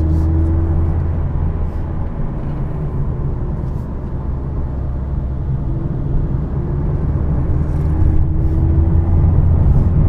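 A 2017 Mazda Miata RF's 2.0-litre four-cylinder engine and road noise heard from inside the cabin while driving: a steady low rumble under a faint engine note. The engine note rises slowly and the sound grows louder over the last few seconds as the car accelerates.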